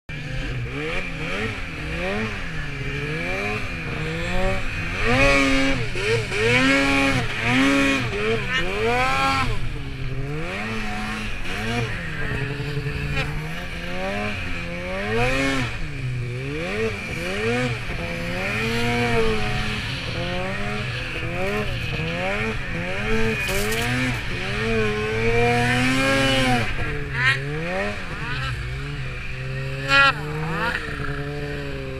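Snowmobile engine revving up and down over and over, its pitch rising and falling about once a second, as the sled carves through deep powder snow.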